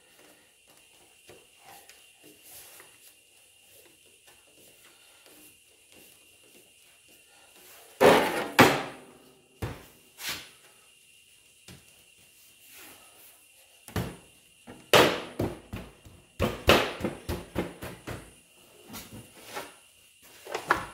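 Sheet-steel door panel being handled on a workbench while a rubber edge seal is worked onto it. Faint handling sounds at first, then a series of sharp knocks and clunks starting about eight seconds in, coming in a cluster near the end.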